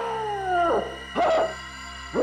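A dog's drawn-out howl, sliding down in pitch, then a short bark about a second later, over a low steady music drone.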